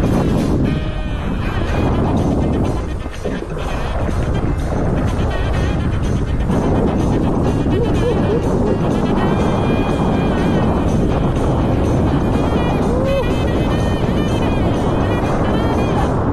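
Background music over loud, continuous rushing water and spray, with wind buffeting a body-mounted action camera as a kite drags two kitesurfers through choppy water. The rush dips briefly about three seconds in.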